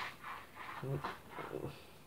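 A man's voice, faint and murmured: three short sounds in the second half, in a quiet gap between louder talk.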